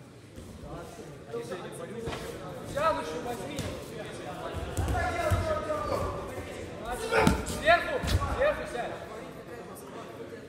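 Heavy thuds of judo players' bodies landing on the tatami mat as they grapple and go to the ground, about five seconds in and twice more a couple of seconds later, amid loud shouting from the sidelines in a large hall.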